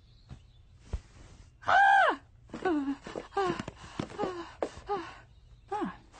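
A series of vocal cries, each falling in pitch: a long, loud one about two seconds in, then five shorter ones about every two-thirds of a second. A couple of soft knocks come before them.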